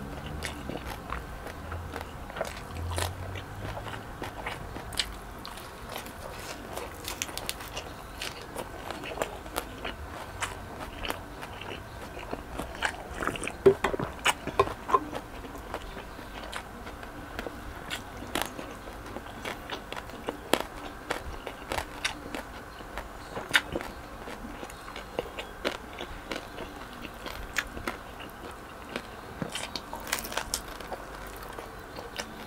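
Close-miked chewing and crunching of crispy lechon belly, roast pork with crackling skin, with many sharp crunches throughout and the loudest cluster about halfway through.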